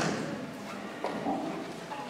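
Lull in a large hall: faint background voices and the shuffle of people moving, with a single light knock about a second in.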